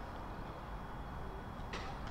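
Faint, steady ambient noise of an open cricket ground picked up by the broadcast's field microphones, mostly a low rumble with no distinct events, and a brief faint tick near the end.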